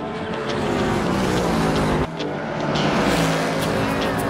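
GT race car running at speed on track, its engine note rising and falling, with an abrupt break in the sound about halfway through.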